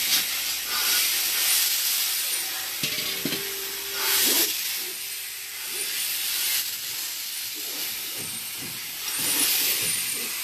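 Compressed air hissing from a Quik-Shot inversion unit as it blows a cured-in-place liner into a drain pipe. The hiss swells louder at the start, about four seconds in and near the end, with a brief steady hum a little over three seconds in.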